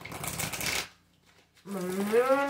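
A deck of tarot cards shuffled by hand: a quick rustling flutter of cards lasting under a second. A woman starts speaking near the end.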